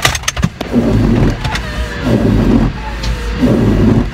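Garbage truck engine running, a low rumble that swells and fades a few times, heard through a car's open side window. A few sharp clicks come near the start.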